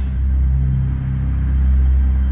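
Dark ambient background music: a steady low rumbling drone with no beat, running loud between the spoken passages.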